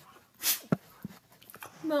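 A dog close to the microphone gives one short breathy snort, followed by a sharp click. A woman's voice starts right at the end.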